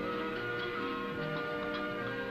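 Background music: sustained instrumental notes shifting in pitch, with a light ticking rhythm.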